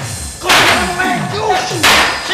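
Gamelan fight accompaniment: kendang drum strokes falling in pitch, about three a second. Two loud sharp crashes accent the stage fight, about half a second in and again near the end.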